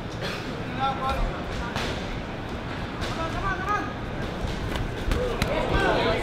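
Boxing sparring in a ring: scattered sharp thuds of gloved punches and footwork on the canvas, with voices from the crowd and corners calling out in short bursts.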